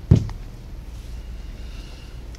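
A single dull thump on the tabletop just after the start, as a handbag or shoe is set down or cleared from the table, followed by a low steady room hum.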